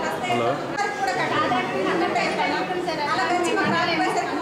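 Speech: several people talking at once, a woman's voice among them.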